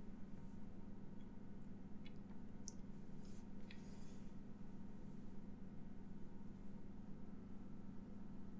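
Quiet room tone with a steady low hum, and a few faint short rustles and clicks around the middle as a plush toy head with a shaggy faux-fur mane is handled and turned over.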